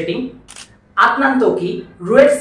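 Speech: a voice narrating, with a pause about half a second in that holds one short, sharp click.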